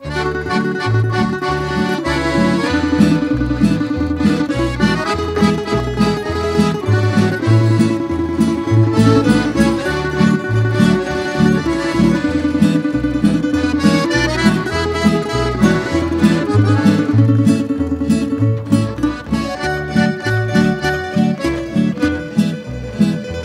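Instrumental introduction of a Croatian tamburica folk band: tamburicas plucking, a double bass playing a steady, even bass line, and two piano accordions carrying the melody.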